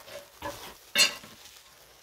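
Three short rustling scrapes, the loudest about a second in, as a snake hook and a moving cobra disturb plastic sheeting and straw litter.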